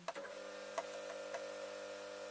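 Lightweight Singer electric sewing machine starting up at the beginning and then running steadily as it stitches cotton fabric: a constant motor hum with a few faint ticks.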